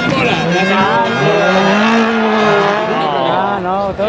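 A rally car's engine revving hard as the car slides through a gravel turn. Its pitch rises and falls in a long sweep, then wavers quickly near the end.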